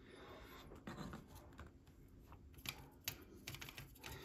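Faint, irregular light clicks and taps of small objects being handled on a hobby desk.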